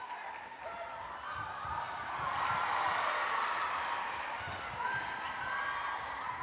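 Court sound from an indoor netball match: short squeaks and thuds from players' shoes and the ball on the wooden court, over a crowd noise in the hall that swells about halfway through and then eases.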